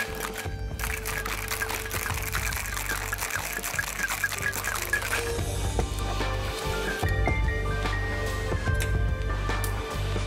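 Ice rattling in a stainless steel cocktail shaker being shaken, a rapid regular rattle for about the first five seconds, over background music that runs throughout and carries on alone after the shaking stops.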